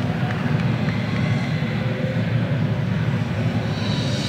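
Large arena crowd making a steady, loud low rumble of noise, with no single voice standing out.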